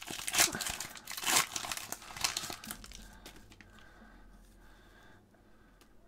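Wrapper of an Upper Deck hockey card pack being torn open and crinkled in the hands. There are several sharp rustles in the first two seconds or so, and the sound dies away to faint handling noise by about three seconds in.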